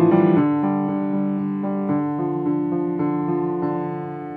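Piano playing a left-hand part on its own in the low register: broken-chord notes enter one after another and are left to ring, slowly fading toward the end.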